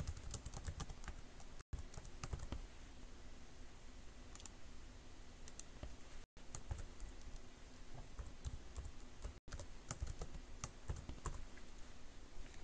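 Typing on a computer keyboard: bursts of quick keystrokes separated by short pauses, over a faint steady hum. The sound cuts out completely for an instant three times.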